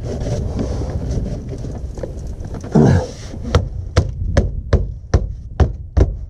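Foam insulation board being thumped up into the trailer floor with the fists: a regular series of dull knocks, about two to three a second, from about halfway through.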